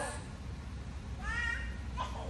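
A faint, brief high-pitched vocal sound about a second in, its pitch rising and then falling, over a steady low hum.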